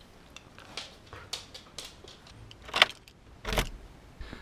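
A house front door being shut and locked. Keys jangle, with a few light clicks and rattles, then a sharp click and a thud about three and a half seconds in.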